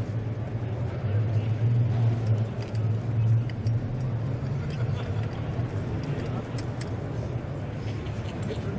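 Motorcycle engine idling with a steady low hum that grows a little louder for a couple of seconds soon after the start, then settles.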